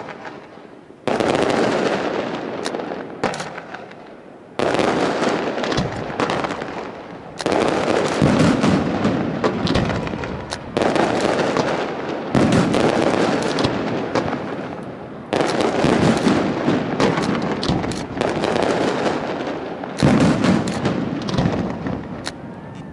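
Aerial firework shells bursting in a display, about eight loud bangs two to three seconds apart, each followed by a crackling, rumbling tail that dies away.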